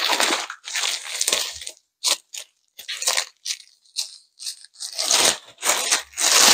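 Thin plastic packaging bag rustling and crinkling in irregular bursts as a vacuum-packed pillow is pulled out of it.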